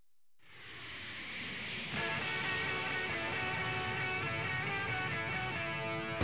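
Background music with guitar fading in from silence. It sounds muffled at first, and distinct guitar notes come in about two seconds in.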